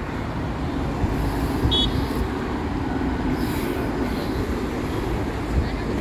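Steady city road traffic, with cars and double-decker buses running on a busy street. There is a brief high chirp about two seconds in.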